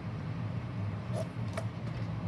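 Steady low room hum, with two light clicks a little past halfway as the metal-tipped clay tool is handled and set down on the work board.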